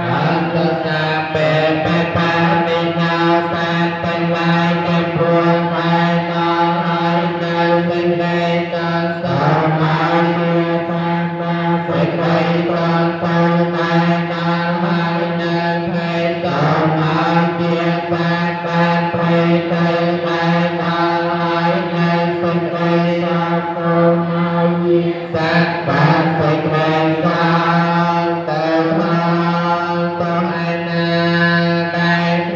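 Buddhist chanting: voices recite continuously on a largely steady pitch, with a brief slide in pitch every several seconds.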